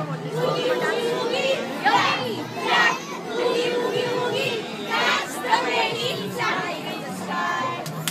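A roomful of young children chattering and shouting together, many voices at once.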